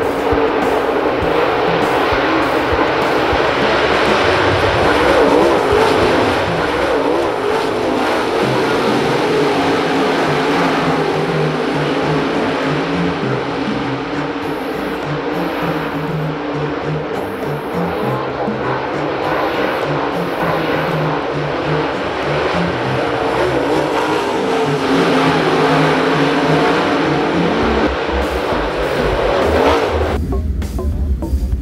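Dirt late model race cars' V8 engines running hard at speed on a clay oval, with background music playing over them.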